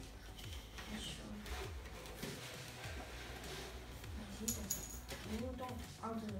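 Light plastic clicks and knocks of LEGO pieces being handled and turned on a LEGO baseplate on a tabletop, with a couple of sharper clicks about two-thirds of the way through.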